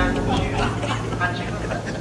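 People's voices on a railway platform over the steady low hum of a train standing at the platform.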